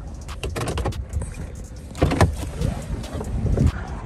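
Someone getting out of a car: clicks and knocks of the door latch and door being handled, the loudest about two seconds in, then a run of low thumps like footsteps on dry ground.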